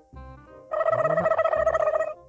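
Background music. About two-thirds of a second in, a loud sustained pitched tone with a fast flutter comes in and holds for just over a second.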